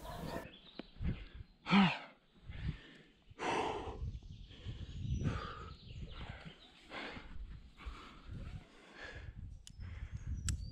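A rock climber's breathing under effort: repeated forceful exhales while pulling through hard moves, with a short voiced grunt about two seconds in.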